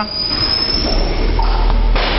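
Low rumble of a motor vehicle growing louder, with a faint high whine rising in pitch.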